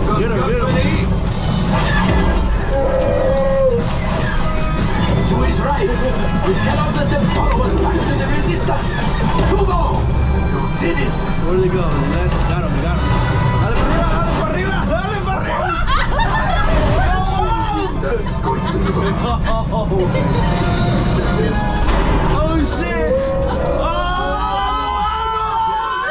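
Flight-simulator ride soundtrack: music and voices over a steady deep rumble.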